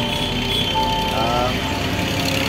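A man's voice with background music; a single note is held for about half a second in the middle, over a low steady rumble.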